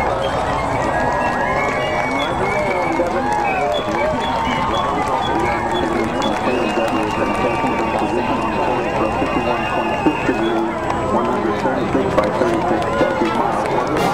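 A babble of many voices talking over one another, with no single voice standing out, over a steady low rumble.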